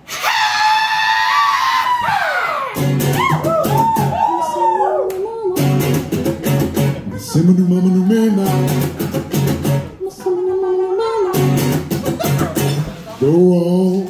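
Live solo performance: a singer opens with a high held wail that glides down, then sings over a strummed acoustic guitar in an even rhythm.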